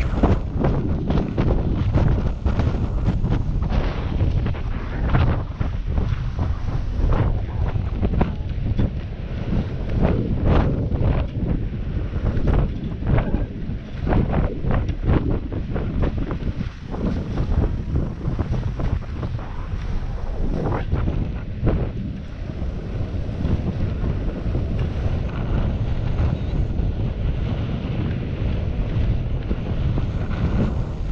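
Wind buffeting an action camera's microphone while skiing downhill, a loud steady rumble, with repeated hissing scrapes of skis over groomed snow that come thicker in the first half and thin out as the skier slows.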